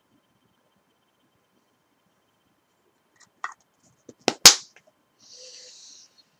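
About three seconds of near silence, then a few sharp clicks and one louder knock about four and a half seconds in, followed by a short hiss, as a person moves close to the microphone.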